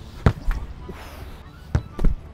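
A football kicked hard, a sharp thud about a quarter second in. About a second and a half later a second thud follows as the ball strikes its target, a player bent over in the goal.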